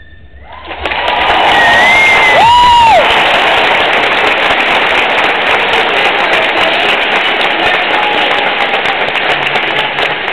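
Large theatre audience bursting into applause and cheering at the end of a dance performance. It starts about half a second in and stays loud and steady, with a couple of shrill whistles about two seconds in.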